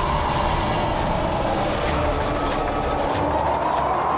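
Dramatic TV-serial background score: a loud, sustained drone with a steady high tone over a noisy wash and a low rumble.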